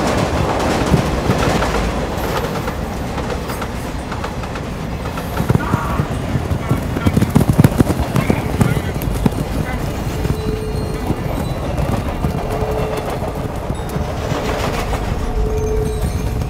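Dense action-film sound mix: a train running, with the hoofbeats of a moving camel herd and a music score. A run of loud thuds comes about five to eight seconds in.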